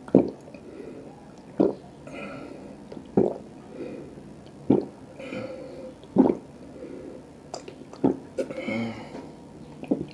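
Close-miked gulps of ice-cold water drunk from a plastic cup: a loud swallow about every second and a half, six or seven in all, with softer throat and water sounds between them.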